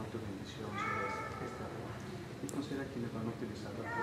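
A baby giving a short, high-pitched cry about a second in, with another starting near the end, over low murmuring voices.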